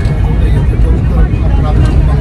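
Steady low rumble of a moving vehicle's engine and road noise, heard from inside the cabin while driving.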